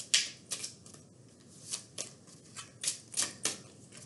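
A deck of oracle cards being shuffled by hand, with cards slid and dropped onto the pack in a string of irregular soft slaps and clicks.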